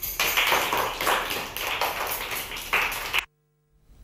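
A group of young children in a classroom activity: scattered taps and claps over a dense, noisy room sound, cutting off suddenly about three seconds in.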